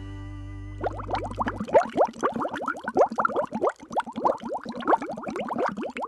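Cartoon bubbling sound effect for an animated logo: a brief held tone, then a rapid string of short rising blips and plops, like a flask bubbling over.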